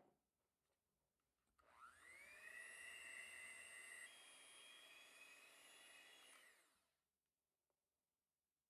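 Electric hand mixer beating egg whites and sugar into meringue in a glass bowl. The motor whine rises as it spins up about a second and a half in, holds steady, shifts pitch once midway, and winds down near the end. There is a brief clink at the very start.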